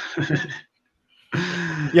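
Men laughing over an online call. The laughter drops out to dead silence for about two-thirds of a second midway, then a breathy laugh comes back.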